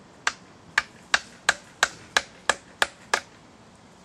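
Hand tools striking into a wooden log as it is carved: a steady series of about nine sharp strikes, roughly three a second.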